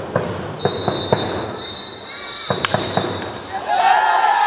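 Ballpark sound from the dugout: a scatter of sharp cracks and claps over faint voices, with a thin steady high tone through the middle. Background music comes back in near the end.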